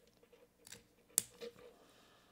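Faint handling of a brushed-steel Parker Jotter fountain pen as its barrel is fitted back onto the nib section after a cartridge change, with a few small clicks and one sharp metal click just past the middle.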